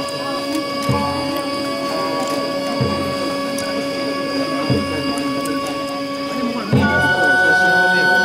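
Shinto kagura music: long held notes over a low drum struck about once every two seconds, the notes moving to a new, higher pitch with a drum stroke near the end.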